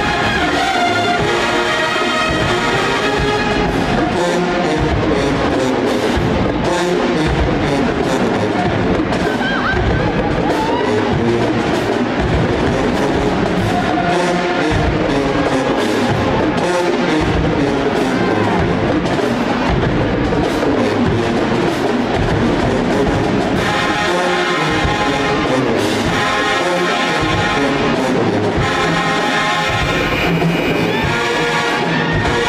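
A marching band's brass and drums play a loud, continuous dance tune with a steady beat.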